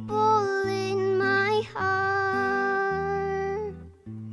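A girl singing two long held notes of a hymn over her own acoustic guitar accompaniment. The voice fades out near the end, leaving the guitar's low notes.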